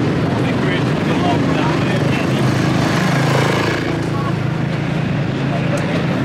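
Indistinct voices over a steady engine drone that swells a little in the middle and then eases.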